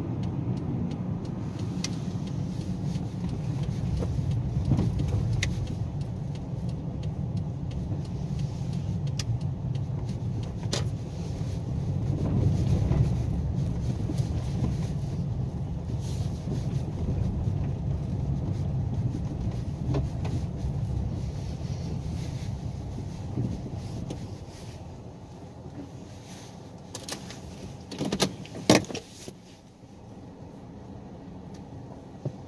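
Inside a moving car: a steady low rumble of engine and tyre noise, easing off over the last few seconds as the car slows and pulls up. A couple of sharp knocks come near the end.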